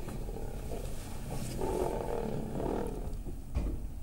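Asiatic lions giving low, muffled roaring calls that swell in the middle and ease off near the end.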